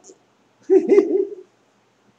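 A person's short voiced murmur, held for under a second, starting about half a second in.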